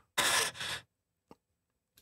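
A breathy, voiceless laugh into the microphone: two short puffs of breath, then a single short click.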